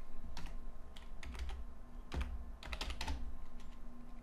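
Typing on a computer keyboard: an uneven run of light key clicks.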